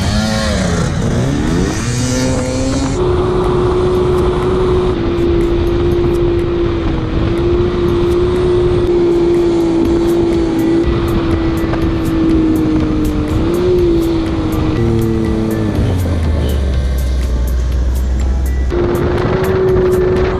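Side-by-side UTV engine running hard at a steady pitch while driving over sand dunes, with wind rushing over the microphone. The engine pitch rises and falls in the first few seconds, wavers again near the three-quarter mark, and briefly gives way to a deep low drone before returning to its steady note near the end.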